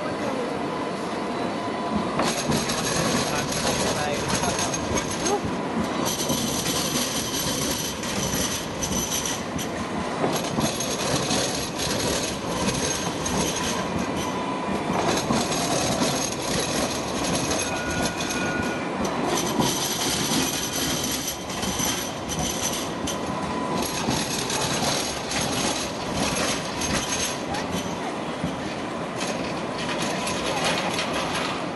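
Sydney Light Rail trams rolling through a street junction on embedded track. A high-pitched wheel squeal comes and goes in stretches of a few seconds as they take the curves.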